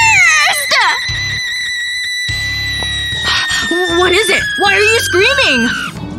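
A woman screams and then wails and moans in frustration, wordless, over background music. A long high held tone runs through most of it, slowly sinking in pitch.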